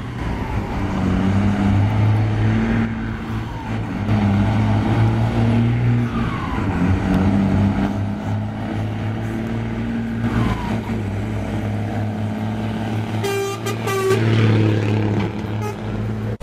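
Heavily loaded Mercedes-Benz conventional-cab truck's diesel engine pulling hard up a slope under full load, blowing black smoke; a deep steady drone whose pitch dips and recovers about three times as it works.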